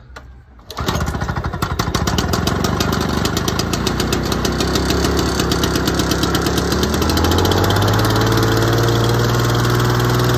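Lawn-Boy Duraforce two-stroke mower engine, choked, catching and starting about a second in, then running. Its speed settles into a steady even note about seven seconds in. This is its first start after a new ignition coil, primer bulb and fuel filter were fitted to cure cutting out when hot.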